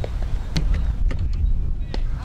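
Wind rumbling on the microphone, with one sharp knock about half a second in and a few fainter clicks after it.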